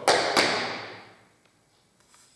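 Two loud tap-shoe stamps on a tiled floor, about a third of a second apart, ringing out and fading over about a second. They are the double stamp that ends a heel-shuffle-drop tap sequence.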